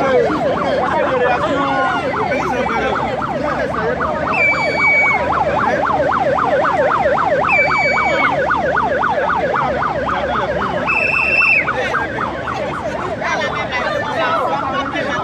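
Emergency vehicle siren in a fast yelp, rising and falling about five times a second. Three short, higher-pitched steady tones sound over it, about three seconds apart.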